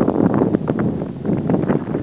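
Wind buffeting the camera's microphone in irregular gusts.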